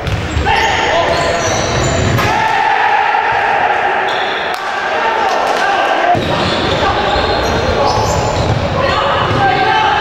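Live sound of an indoor futsal match in a sports hall: the ball thumping and bouncing on the wooden court amid players' shouts, all echoing in the hall.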